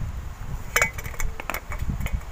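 Handling noise from hand work on a wire coil: a few light clicks and knocks of small hard parts, several close together about a second in, then single ones, over a low rumble.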